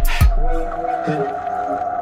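Background music: a heavy electronic beat stops within the first half-second, leaving a steady held high tone under a slow melodic line.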